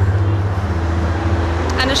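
Steady low rumble of street traffic, with a faint steady hum above it; a woman starts speaking near the end.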